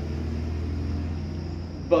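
A steady low rumbling hum.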